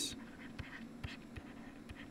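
Stylus strokes on a pen tablet: faint scattered ticks and light scratching as digits are written, over a faint steady hum.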